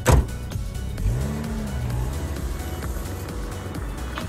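Electronic music with a steady beat, and a car pulling away under it: its engine note rises about a second in, then eases. There is a sharp, loud hit right at the start.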